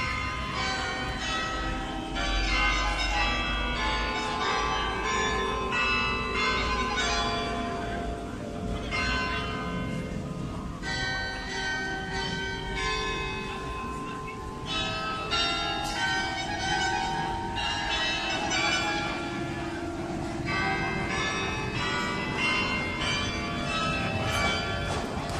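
Church bells ringing, several bells at different pitches struck over one another in a continuous peal.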